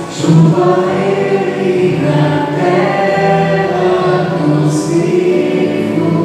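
A group of voices singing the slow refrain of a sung psalm in long, held notes.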